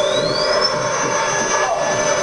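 Decompression chamber machinery responding as its pressure-inlet dial is turned: a high whine that rises in pitch and levels off into a steady high tone about half a second in, over a steady rushing noise. A lower tone dips briefly near the end.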